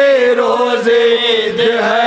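A group of men chanting a Shia mourning lament in unison around a microphone, a lead voice with others joining on long held notes.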